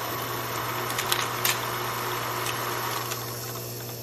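Film projector sound effect: a steady mechanical whirr with a low hum and a few scattered crackles, fading near the end.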